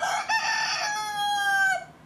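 A recorded rooster crowing: one crow of almost two seconds that ends with a drop in pitch and cuts off.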